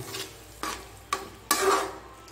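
Metal ladle stirring thick curry in an aluminium kadai: three short scrapes against the pan in the second half, the last one the longest.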